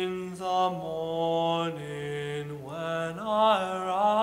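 A tenor voice sings a slow spiritual line in long held notes. The line steps down in pitch through the first half and climbs back up near the end.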